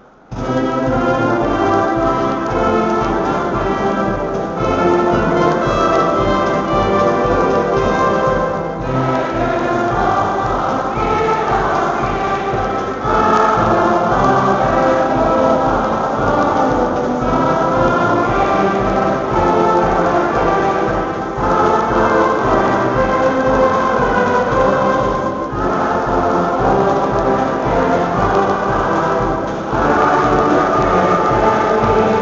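A large mixed amateur choir singing a chorale in a big church. It comes in abruptly at the start and sings in phrases of about four seconds, with short breaks between the lines.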